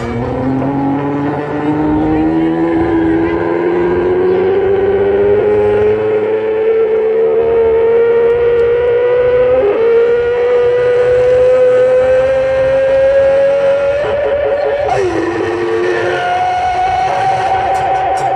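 One long held musical note over the PA, sliding slowly and steadily upward in pitch for about fourteen seconds, then dropping briefly and settling on a higher steady note near the end.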